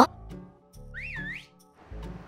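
A short whistle, about a second in, sliding up twice in a wavy glide over a faint background music bed.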